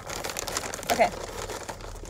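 Package wrapping crinkling and crackling as it is handled.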